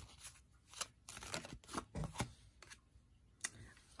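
An oracle card deck being shuffled by hand: soft, irregular clicks and rustles of the cards slipping against one another.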